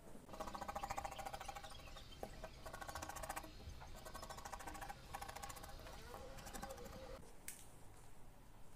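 Scissors cutting fabric in four runs of rapid ticking, each one to two seconds long with short pauses between.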